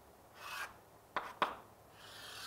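Chalk on a chalkboard: one short scraping stroke, then two quick sharp taps as lines are drawn.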